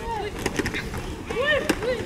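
Shouting voices from the sideline, with a few sharp clacks of helmets and shoulder pads colliding as the linemen meet after the snap, about half a second in and again near the end.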